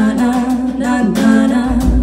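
Live band playing: voices singing over double bass, electric guitar and drum kit, with a deep low thump near the end.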